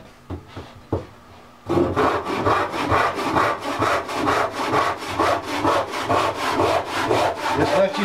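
Freshly filed and set hand saw cutting into a wooden board with quick, even back-and-forth strokes, starting about two seconds in after a couple of light knocks; it is a test cut of the newly sharpened teeth.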